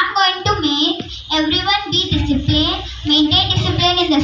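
A young girl's voice speaking continuously into a handheld microphone.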